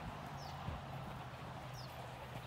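Pony of the Americas mare's hooves walking on soft arena sand, with a soft thump about a third of the way in and two short, high, falling chirps.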